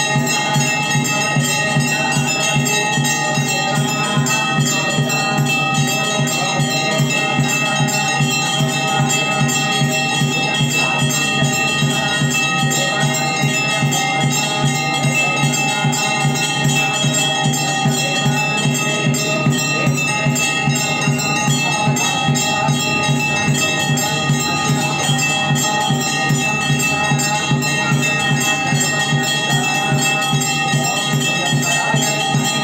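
Temple bells ringing continuously in a fast, even clangour, with steady metallic tones that do not change throughout.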